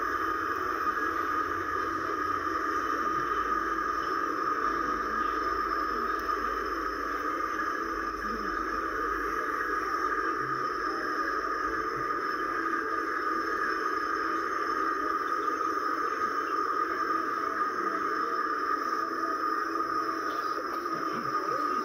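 Steady, unchanging hum from a laptop's speakers playing several videos at once, their layered soundtracks blurring into one drone with no words.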